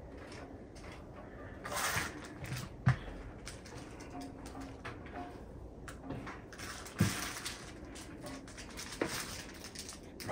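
Quiet room tone with a brief scraping rustle about two seconds in and two sharp knocks, one near three seconds and one near seven seconds, with a lighter click near the end.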